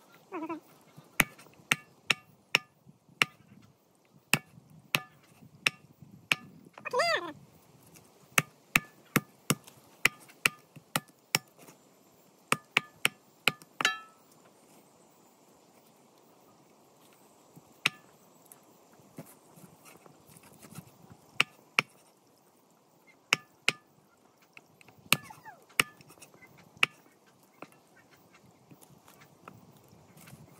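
Cleaver chopping raw squirrel meat on a thick wooden plank: a run of sharp chops, about two a second, for the first half, then a few scattered chops later. A brief animal call sounds about seven seconds in.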